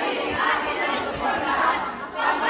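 A crowd of people talking and calling out over one another, many voices overlapping with no music.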